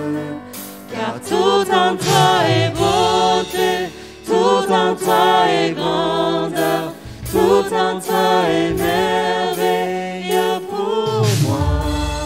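Worship song sung by several voices together into microphones, with electric keyboard accompaniment holding sustained chords underneath.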